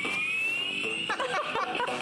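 Music from a small Bluetooth speaker built into a flameless candle lantern: a single synth tone rising slowly and steadily, the build-up of a track. About a second in, busier wavering sounds take over.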